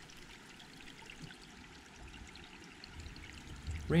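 Faint, steady sound of running creek water.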